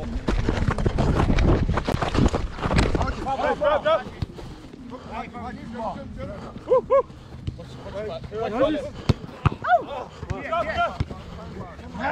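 Loud rumble and knocking on the camera's microphone for about the first three seconds as the person filming moves on the field, then scattered short calls and shouts from players across the pitch.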